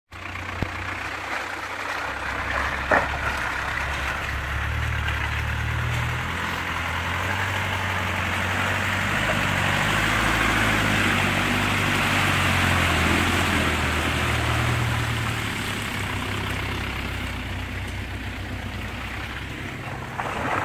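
Range Rover Classic's engine running at low speed as it crawls along a muddy off-road track, growing louder as it comes close and passes, then easing off. A sharp click sounds about three seconds in.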